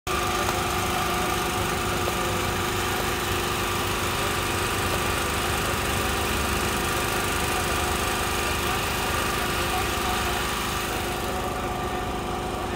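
Drone's propellers and motors running with a steady, even hum.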